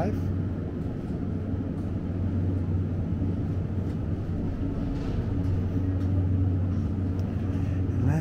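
Steady low hum of a supermarket's refrigerated display cases, running evenly with no breaks.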